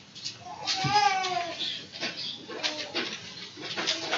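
High-pitched vocal calls, the clearest one about a second in and falling in pitch, over faint background murmuring.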